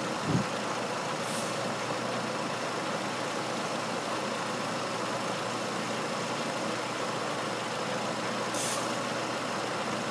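Nissan 2.5-litre four-cylinder engine (QR25DE) idling steadily, with a short thump just after the start and two brief hisses, one about a second and a half in and one near the end.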